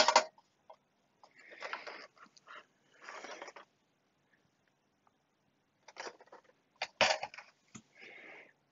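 Faint handling noise of an opened bench multimeter's metal chassis: scattered rubbing and rustling as it is turned over in the hands, then a knock about seven seconds in as it is set down on the bench.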